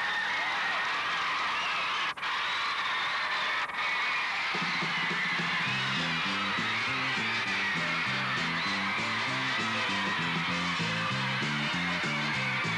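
1950s-style rock and roll band music, with a stepping walking bass line coming in about four and a half seconds in. The sound briefly cuts out twice in the first four seconds.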